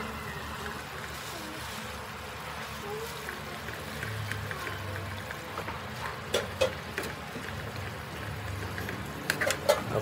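Hairy ark clams and small shrimp sizzling in a steel wok while a slotted spoon stirs them, with scattered scrapes and clinks of the spoon on the pan that come more often in the last few seconds.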